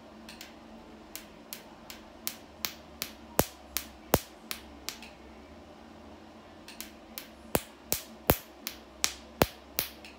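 Picosecond laser handpiece firing pulses on facial skin: sharp snaps about two and a half to three a second, in two runs with a pause of nearly two seconds around the middle, over a low steady hum.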